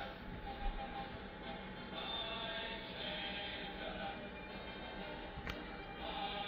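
Quiet background music with steady held tones, and one short click near the end.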